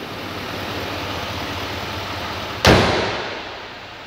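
A pickup truck's hood slams shut about two and a half seconds in: one loud bang that dies away. Before it there is a steady hum from the engine bay of the running 6.6-litre Duramax diesel V8, and after it the hum is quieter.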